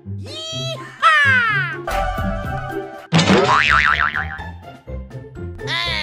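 Cartoon-style comedy sound effects over background music with a repeating bass line: a rising pitch glide just after the start, a falling glide about a second in, a wobbling springy tone around three to four seconds, and another falling glide near the end.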